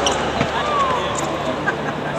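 Voices echoing in a large hall over a steady low hum, with a single sharp knock about half a second in.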